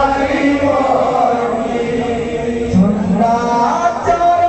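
Kirtan: a group of men chanting devotional verses in chorus, several voices together, to the accompaniment of a barrel drum and hand cymbals.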